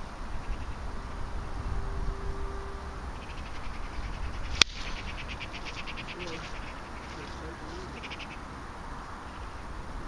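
A golf iron striking the ball: a single sharp click about halfway through, with rapid chirping trills around it.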